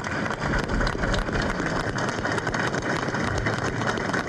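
A crowd of soldiers applauding: steady, dense clapping.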